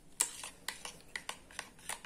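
Steel spoon stirring a runny coffee-and-aloe-gel paste in a small steel bowl, clinking against the bowl's sides in quick, irregular clicks several times a second.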